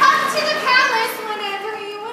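Children in a theatre audience calling out and chattering, several voices overlapping.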